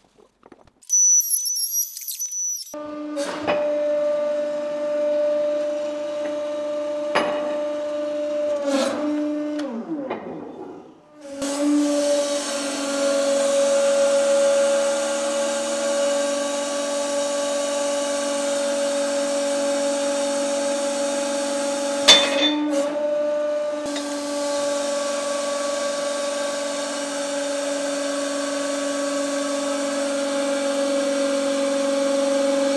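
Hydraulic press's pump running with a steady hum while the ram forces a piston down into a steel cylinder die. About ten seconds in, the pitch sags and the sound drops out briefly before picking up again. A few sharp clicks come along the way, the loudest about 22 seconds in.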